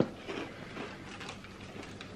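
Crunchy cereal being chewed close to the microphone: one sharp crunch at the start, then faint, irregular crunching.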